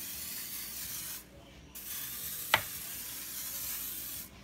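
Aerosol cooking spray hissing from its can in two long bursts, with a short break just over a second in. A single sharp click about two and a half seconds in is the loudest moment.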